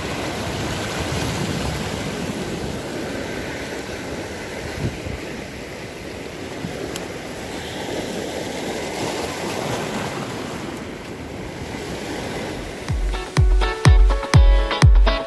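Small sea waves washing over and around shoreline rocks, a steady rushing swash that swells and ebbs. Near the end, electronic dance music with a heavy pulsing beat starts and takes over.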